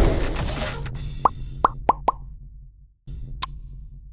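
Intro sound effects: a loud whoosh dying away over the first second, then four quick rising plops, and about three and a half seconds in a short bright click.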